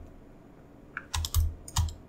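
Computer keyboard keys pressed in a quick run of four or five keystrokes in the second half.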